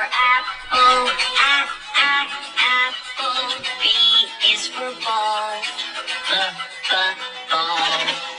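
A children's alphabet phonics song, with a voice singing over backing music. It runs through the letters A for apple and B for ball.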